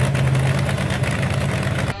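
Supercharged engine of a rat-rod car on tank tracks idling steadily.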